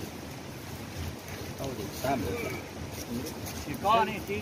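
Steady low rumble of wind on the microphone, with quiet voices talking from about halfway through.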